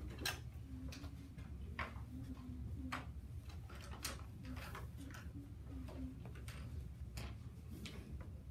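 Small, irregularly spaced clicks and taps of pencils and crayons on desks as children draw, over a steady low room hum.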